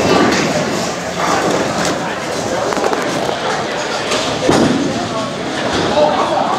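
Bowling alley noise: a steady din of balls and pins on the lanes under background voices, with a louder thud about four and a half seconds in.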